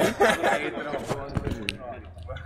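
Men's voices talking, with a short click near the end.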